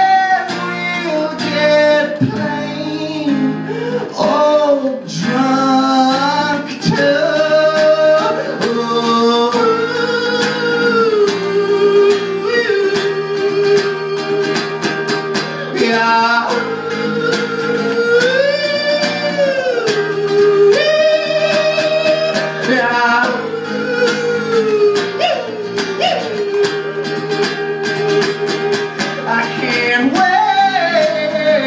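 Male singer holding long, sliding sung notes without clear words over a strummed acoustic guitar, performed live.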